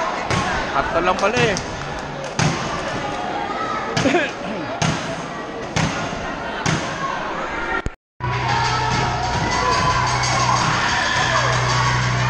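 Basketball bouncing on a hard court, single bounces about once a second over crowd chatter in a covered gym. After a short break about two-thirds through, crowd noise continues with a steady low hum.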